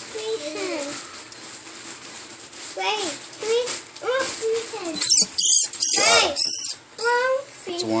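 High-pitched squealing cries. They are softer and chattering through the first half, then loudest and shrillest in a few sharp squeals between about five and seven seconds in.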